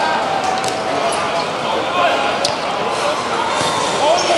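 Footballs being kicked on a hard outdoor five-a-side court, with a sharp knock of a kick about halfway through, over voices of players calling out.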